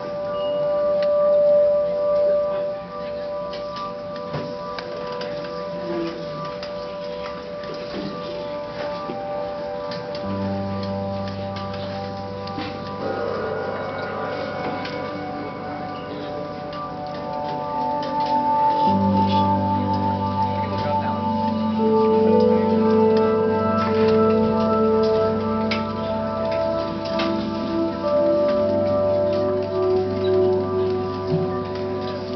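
Live band playing slow instrumental music on keyboards and synthesizers: sustained organ-like chords, with a deep bass note coming in about ten seconds in and the harmony shifting to new held chords a little past the middle.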